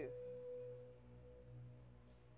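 A faint sustained ringing tone from the dance piece's music fades away within the first second, leaving a low hum that swells and eases about once a second.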